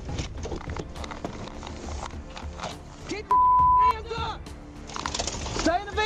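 A censor bleep, one steady beep lasting just over half a second, about halfway through, covering a shouted swear word. It sits over officers' shouting and background music.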